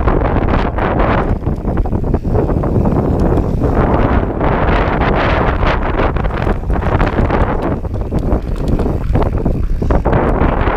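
Wind buffeting a chest-mounted GoPro's microphone as a mountain bike rolls fast downhill over grass, with frequent short knocks and rattles from the bike over bumps.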